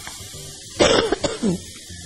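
A woman coughs once, a short loud burst about a second in.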